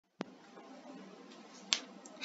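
Two sharp clicks over faint room hiss: a short one just after the start and a louder one about a second and a half later.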